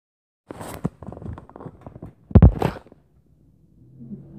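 Handling noise of a phone camera at the microphone: a run of small clicks and rubs, then one loud bump about halfway through and a short scrape, before it goes quiet.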